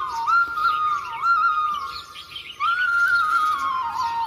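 Indian bamboo flute (bansuri) playing a slow, held melody with quick grace-note ornaments, easing off briefly about two seconds in before rising again. Birdsong chirps behind it.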